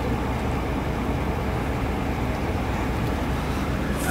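A vehicle engine idling steadily, a low even rumble.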